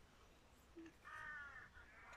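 Near silence, broken about a second in by one faint bird call, a slightly falling call lasting about half a second.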